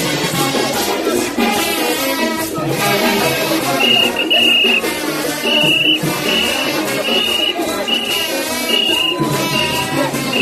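Loud street-procession music with a dense crowd. From about four seconds in, a high-pitched tone cuts in as a steady series of short blasts, roughly every two-thirds of a second.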